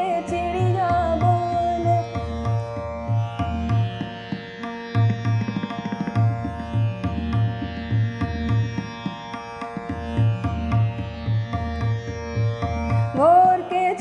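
Hindustani classical accompaniment in fast teentaal: tabla keeping a quick, steady beat under a sustained drone. The singer's voice trails off at the start and comes back with a rising phrase near the end.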